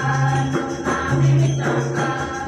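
Group of voices singing an Adivasi folk dance song in held phrases about a second long, over rhythmic percussion with jingling.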